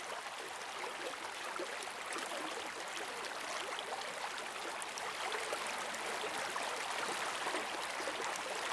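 A small rocky creek rushing steadily over rocks and rapids in a constant wash of water.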